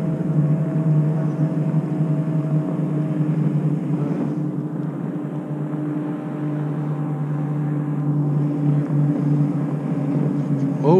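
Steady motor hum from the boat, a low tone with a fainter tone about an octave above it, running without a break.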